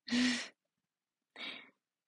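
A young woman's short breathy laugh: two exhaled bursts, the first louder and the second about a second later.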